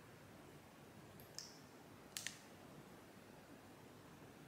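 Near silence: room tone, broken by a faint click about a second and a half in and a sharper double click just after two seconds.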